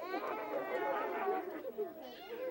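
Children in the audience chattering quietly, several voices overlapping at once.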